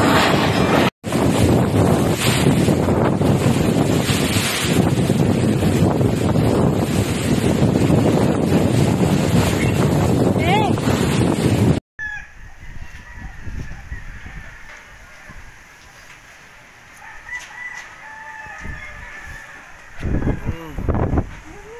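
Strong typhoon wind blowing hard on the microphone as a loud, steady rush, broken by a short dropout about a second in. Around two-thirds of the way through it cuts to a much quieter stretch in which a rooster crows.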